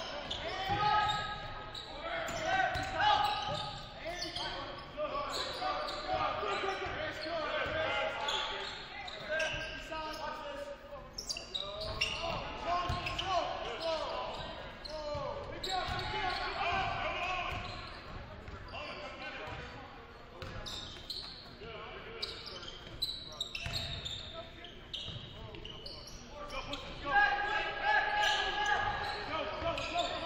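Basketball game sound in a large gymnasium: players', coaches' and spectators' voices calling out and echoing in the hall, with a basketball bouncing on the hardwood court. The voices grow louder near the end.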